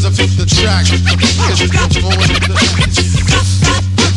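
DJ scratching a record on turntables over a hip hop beat with a steady deep bass line.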